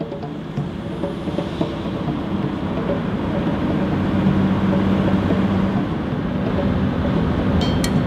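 A 4x4 safari vehicle's engine and road noise as it drives, a steady rumble that grows louder over the first few seconds.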